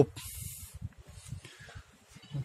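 A brief hiss, then faint irregular low rumbling and soft bumps of a handheld camera being moved about.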